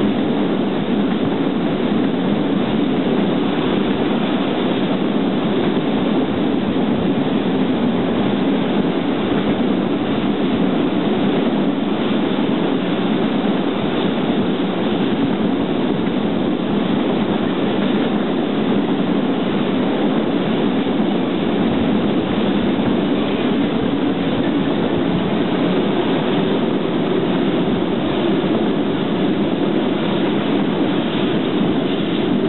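Freight train of loaded open coal wagons rolling past on the rails: a steady, continuous rumble of wagon wheels on the track.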